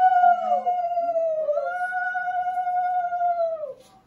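Conch shell (shankha) blown in two long steady notes, the second beginning about a second and a half in; each note sags in pitch as the breath runs out, and the blowing stops just before the end.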